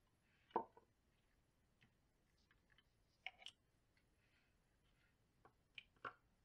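A few faint knocks and clicks of a plastic project box and small parts being handled and set down on a workbench: the loudest about half a second in, a pair near the middle and two small ones near the end.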